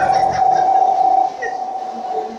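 Public-address microphone feedback: a single steady ringing tone that holds one pitch. It is loudest for about the first second, then drops in level but keeps ringing.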